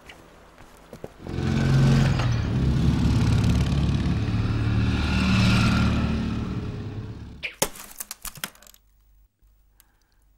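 A motor vehicle's engine running loudly for about six seconds, starting suddenly about a second in and fading away. Near the end comes a quick run of sharp clicks lasting about a second.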